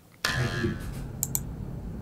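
A few light, sharp clicks of dry cat kibble rubbed and shifted between fingers and a cupped hand, over steady room noise.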